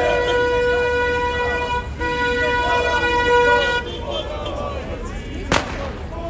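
A horn sounding on one steady note over crowd voices; it breaks off briefly about two seconds in and then cuts off suddenly about four seconds in. A single sharp firework bang comes near the end.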